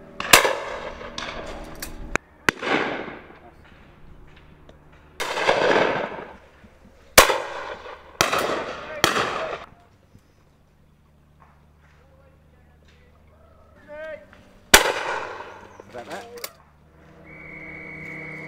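Shotgun shots at driven game, about eight in all, spaced irregularly, each sharp crack followed by a rolling echo that fades over a second or so. The shots come in a cluster, then there is a lull of a few seconds before one more shot near the end.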